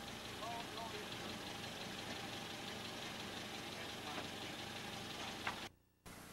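An engine running steadily at idle under outdoor background noise, with a few faint short sounds about half a second in. The sound cuts off abruptly just before the end.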